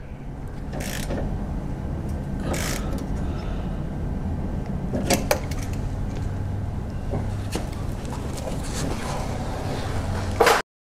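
Steady low workshop hum with a few scattered sharp clicks and knocks of hand tools being handled.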